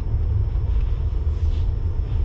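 Steady low rumble of a Jeep SUV's engine and road noise heard from inside the cabin while driving.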